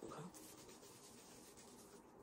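Faint rubbing of a makeup-remover wipe against the skin of the face, a soft scratchy rustle just above the quiet of the room.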